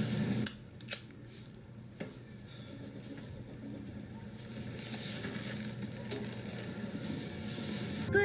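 A cigarette being lit with a lighter, heard through a TV speaker. There is a sharp click about a second in and a fainter one a second later, then a soft hiss.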